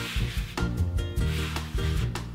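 A hand rubbing and dragging soft chestnut dough across a floured wooden pasta board, rolling trofie, a dry rasping sound over background music.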